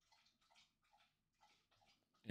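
Near silence, with a faint, repeated lapping of a dog drinking water from a bowl, a few laps a second.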